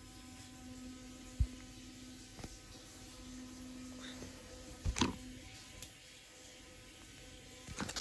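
Quiet background hum with a sharp knock about one and a half seconds in and a couple of softer knocks around the middle.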